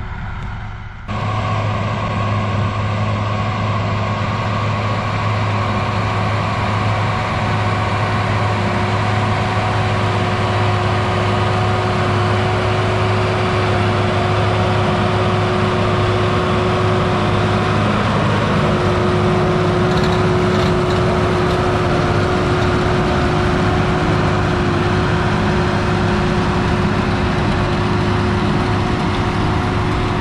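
New Holland tractor's diesel engine running steadily while pulling a McHale round baler: a steady hum with a constant whine over it. It comes in abruptly about a second in.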